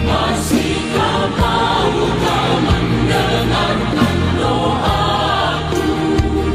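Choir singing an Indonesian Christian worship song, with voices in several parts over steady low sustained accompaniment.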